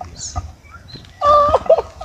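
A short, high whimpering cry about a second in, followed by two brief yelps, from a man lying hurt on the ground.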